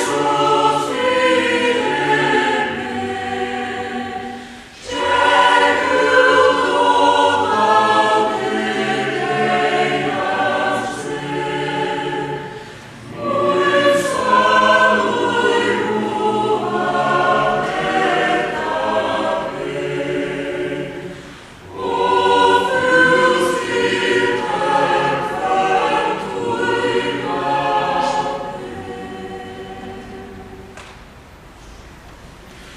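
Mixed chamber choir singing a Passion hymn set to a Moravian hymn tune, in long phrases with short breathing gaps between them. The singing dies away near the end.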